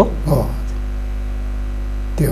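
Steady low electrical mains hum in the studio audio, carrying through a pause in the talk.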